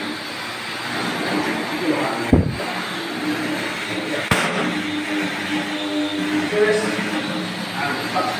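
A dull knock about two seconds in and a sharp click about two seconds later, as the heavy wooden door leaves are handled on the floor, over a steady hum and indistinct talk.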